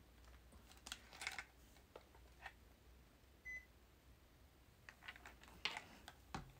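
Near silence with faint scattered clicks and taps of handling, and one short, faint high beep about three and a half seconds in.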